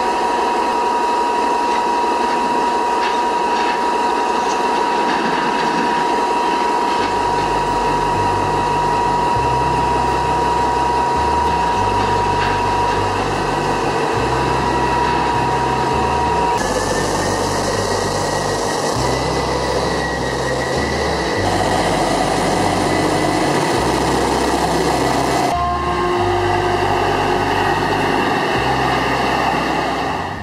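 Heavy mining machinery at work: an electric rope shovel loading a Caterpillar haul truck, a loud steady mechanical noise with a steady high whine through the first half. From about seven seconds in, a deep low sound comes and goes in uneven steps.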